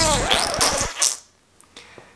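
A loud vocal sound with a bending pitch, lasting about a second, then near quiet with two faint clicks.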